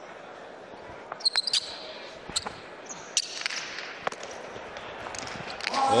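Hard jai alai pelota bouncing on the court floor: a series of sharp knocks, several in quick succession about a second in, then single ones spaced out over the following seconds.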